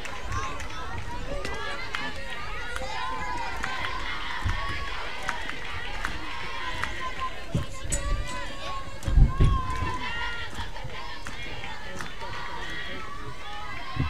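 Crowd of many overlapping voices chattering and calling out, with a few low thumps about nine seconds in.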